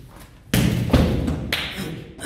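A jokgu ball kicked hard in an attacking strike: a loud thud about half a second in, then a second impact about a second later.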